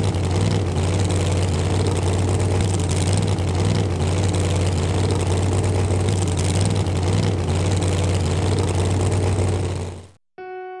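An engine running steadily at a constant speed with a deep hum, cutting off suddenly near the end.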